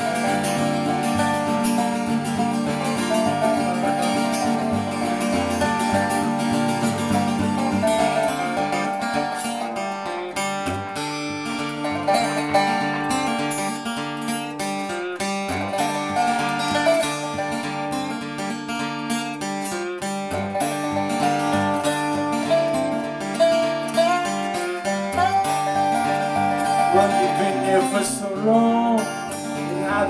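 Instrumental passage of an acoustic guitar and a steel guitar playing together live, with no vocals. Near the end the steel guitar slides up and down between notes.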